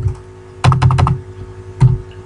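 Typing on a computer keyboard: a quick run of keystrokes a little over half a second in, then a single keystroke near the end.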